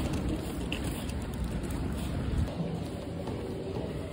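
Steady low rumble and rustle of a handheld phone microphone carried while walking outdoors, with wind buffeting the microphone.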